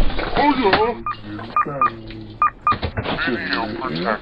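A person speaking, with about five short electronic beeps in the middle, irregularly spaced.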